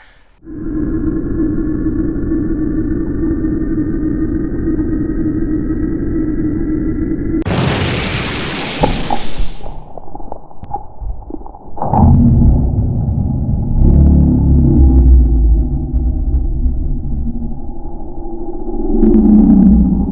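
Added sound effects: a steady, slowly rising electronic tone over a low hum, a loud hissing whoosh about seven seconds in, then deep rumbling booms to the end.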